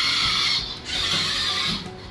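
Small geared DC drive motors of a remote-controlled sprayer cart whining as it is driven and turned, in two runs of about a second each with a short break just over half a second in, stopping near the end.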